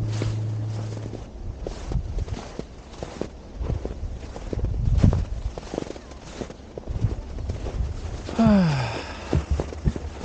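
Footsteps crunching through snow, about two steps a second. Near the end comes one short vocal sound from a person that falls in pitch.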